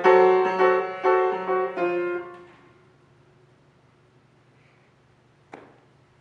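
Upright piano played by hand: a run of chords struck about every half second, stopping about two seconds in and ringing away into the hall. After a quiet stretch there is a short click near the end.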